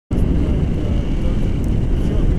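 Wind rushing over the microphone of a camera on a tandem paraglider in flight: a loud, steady low rumble with no engine note.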